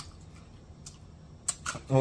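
Soft wet mouth sounds of someone chewing macaroni and cheese: a few sharp smacking clicks, with a closed-mouth 'mm' hum of enjoyment starting near the end.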